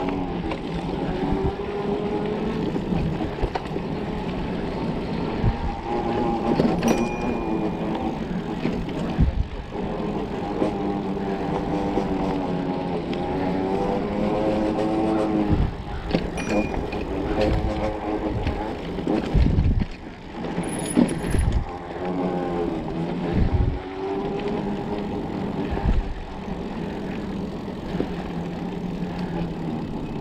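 Electric mountain bike's motor whining, its pitch rising and falling with speed, over tyre noise on a dirt trail, with several knocks and rattles as the bike goes over bumps.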